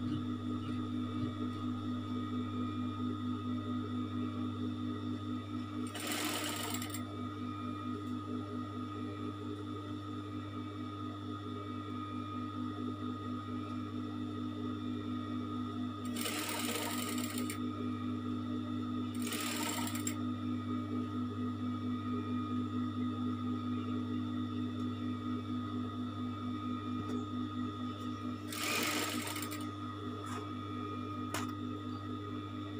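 Industrial sewing machine running steadily, its motor humming under a fast even stitching rhythm as fabric is fed through. A few short bursts of noise break in about six seconds in, twice between sixteen and twenty seconds, and near the end.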